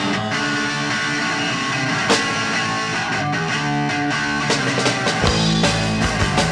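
Garage rock band recording from 1989: electric guitar playing over bass and drums, with no vocals. About five seconds in, the bass and drums come in harder.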